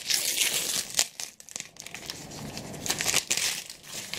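Christmas wrapping paper torn and pulled off a hardback book, with crinkling and crackling, loudest in the first second and again near the end.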